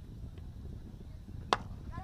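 A cricket bat striking the ball: one sharp crack about a second and a half in.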